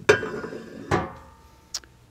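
Homebrewed metal hitch-receiver mast mount clanking into a vehicle's trailer hitch receiver: two sharp metal clanks about a second apart, each ringing briefly.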